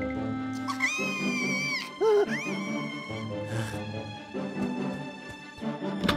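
Cartoon background music with a character's wordless vocal sounds: a drawn-out high squeal about a second in, then a short, loud cry that rises and falls.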